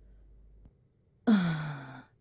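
A person's sighed "oh": a single breathy exhale with voice, starting about a second in and falling in pitch as it fades.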